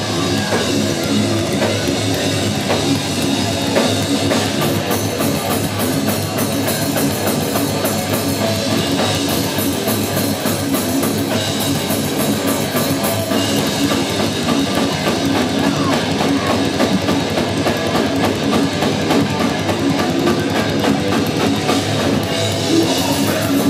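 A heavy metal band playing live and loud: distorted electric guitars over a full drum kit with constant cymbal wash, in an instrumental passage with no singing.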